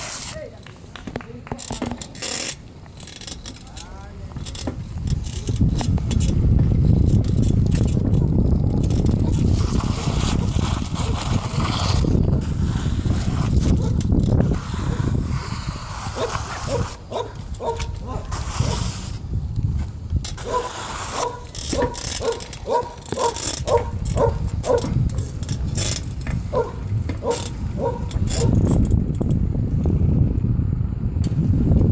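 Riding a bicycle on pavement: wind rushing over the microphone and tyre noise, with frequent clicks and rattles. From about halfway in there are runs of short, evenly repeated pitched notes, about two a second.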